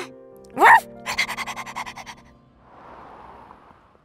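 Cartoon soundtrack: soft held background music with a short voiced cry that rises and falls about half a second in. A quick run of evenly spaced ticks follows and fades out over about a second, then a soft, faint whoosh.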